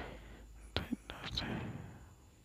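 A person's faint breathing and mouth noises close to the microphone, with one sharp click a little under a second in.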